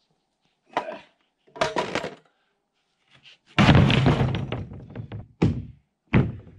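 Large plywood sheets being handled and laid down on a wooden timber frame: a few knocks in the first two seconds, then a loud heavy thud a little past the middle that dies away over a second or so, and another sharp knock near the end.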